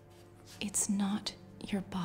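Speech only: a voice speaking in a hushed whisper over a low, steady music drone.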